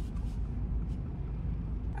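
Steady low rumble of a car cabin with the car running, heard from inside.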